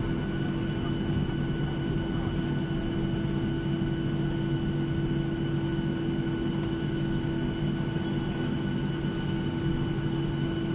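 Jet airliner taxiing after landing, heard inside the cabin: a steady engine hum with a few steady whining tones that hold unchanged throughout.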